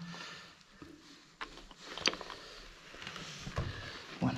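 Loose rubble and broken tile fragments being handled and shifted, with light scrapes and a few small knocks, the sharpest about halfway through.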